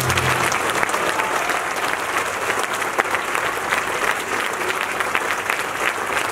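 Audience applauding steadily and densely, while the orchestra's last low note dies away in the first half second.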